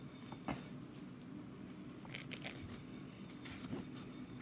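Quiet room tone with a sharp click about half a second in and a few soft ticks and rustles later, from a paperback picture book being handled.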